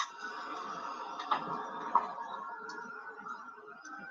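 A craft heat gun runs steadily, its fan whirring as it dries paint on the surface, and fades a little toward the end. Two light clicks come about one and two seconds in.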